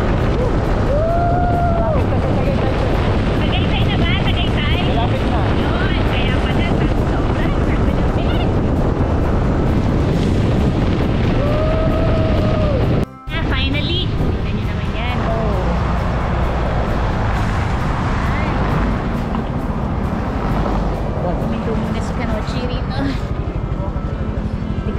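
Heavy wind rush on the microphone and road noise from a moving motorcycle, with music playing over it that has a few held, arching vocal-like notes. The sound cuts out abruptly for a moment about thirteen seconds in.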